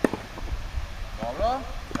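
Tennis racket strings hitting a ball as balls are fed in a coaching drill: two sharp pops about two seconds apart, the first just at the start and the loudest. Between them a voice gives a short call.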